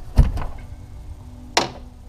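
Handling noise from a cordless impact driver being moved and set down on carpet: a few sharp knocks about a quarter second in, then a short scrape about a second and a half in.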